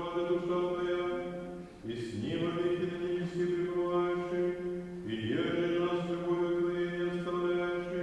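Slow chant of long held vocal notes over a steady low drone. Each phrase slides up into its note, and new phrases begin about two and five seconds in.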